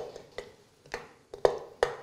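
Metal spoon clinking against a stainless steel bowl while stirring white chocolate as it melts over a water bath: about five sharp clinks roughly half a second apart, the loudest in the second half.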